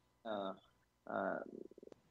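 A person's voice: two short vocal sounds, the second trailing off into a low, creaky rattle.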